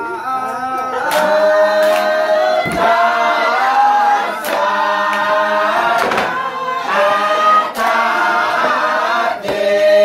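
A group of villagers singing together unaccompanied, with long held notes. A few sharp knocks sound at irregular moments through the singing.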